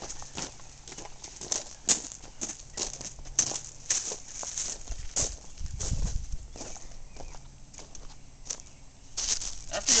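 Footsteps of a person walking outdoors, about two steps a second, with a brief low rumble near the middle.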